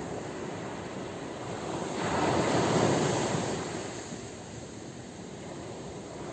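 Ocean surf washing ashore, a wave swelling louder about two seconds in and then fading away.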